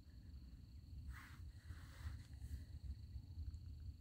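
Quiet outdoor ambience: a low steady rumble with a faint, thin, steady high tone over it, and a soft short rustle about a second in.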